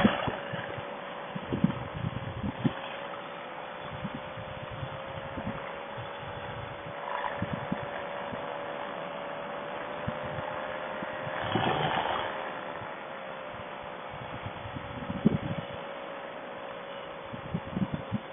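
Paramotor engine running steadily while flying, picked up through a noise-cancelling Bluetooth helmet headset: a faint, thin hum whose pitch wavers slightly and rises a little near the middle, with irregular low wind buffets.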